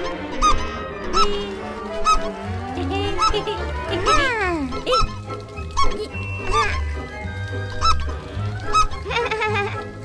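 Cartoon soundtrack: background music with short, squeaky honk-like sound effects about once a second, and one long falling glide about four seconds in.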